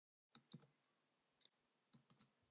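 Near silence with a few faint computer keyboard clicks, a pair about half a second in and more near the end, as keys are pressed to stop a running server with Ctrl-C.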